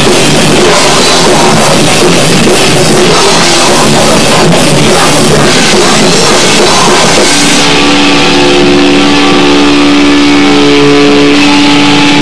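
A loud rock band playing drums, electric guitars and bass together. About seven seconds in, the cymbals and drums drop out and a held chord rings on steadily.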